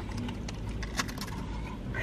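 Quiet chewing of a bite of burrito, with a few faint clicks, over a low steady hum.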